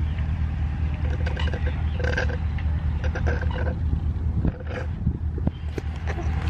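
A bird calling in several short runs of repeated notes, over a steady low rumble.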